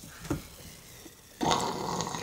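Shaken cocktail poured from a shaker into a small glass: a short faint knock, then a steady stream of liquid starting about a second and a half in.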